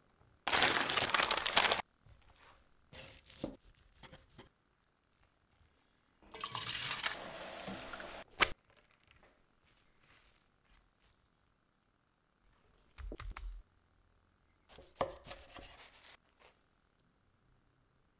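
Hand food-preparation sounds on a wooden board as a burrito is assembled: separate short noisy bursts, the loudest just after the start and a longer one around the middle ending in a sharp click, with smaller handling noises between and near the end.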